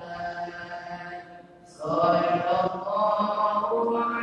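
Men's voices chanting a devotional chant in long, held melodic phrases; one phrase fades out a little past a second in and a new, louder phrase begins near the middle.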